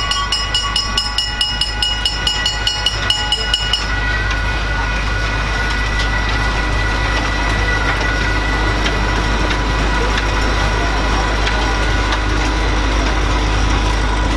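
Small tourist train passing close by. A bell rings with rapid strikes, about four a second, and stops about four seconds in. Then comes the steady running noise of the train and its carriages rolling past.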